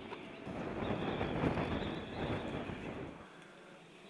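Wind buffeting the microphone outdoors as a gusty, rushing noise. It cuts off abruptly about three seconds in, leaving quiet room tone.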